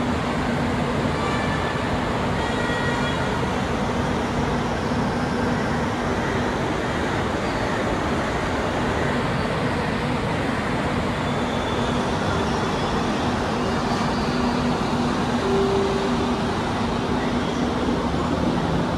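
Metro train carriage heard from inside: a steady running rumble with a constant low hum.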